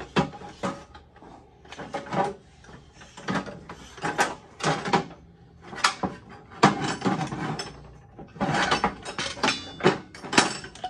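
Old steel wrenches and hand tools clanking and scraping against each other and the sides of a galvanized sheet-metal bin as a hand rummages through them: a string of irregular metallic knocks and clatters.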